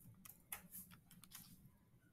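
Faint, irregular clicks of calculator buttons being pressed as a calculation is keyed in.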